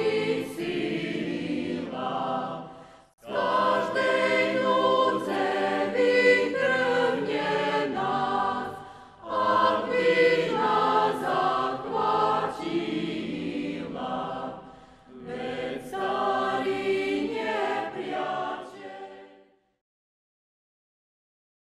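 A choir singing in long phrases, with brief pauses about three, nine and fifteen seconds in, then stopping shortly before the end.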